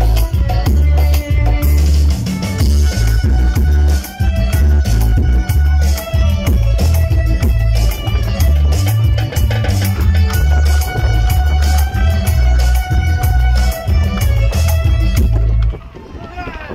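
Dance music with a heavy bass beat and drums, played for a game of musical chairs, cutting off suddenly near the end: the signal for the players to grab a seat.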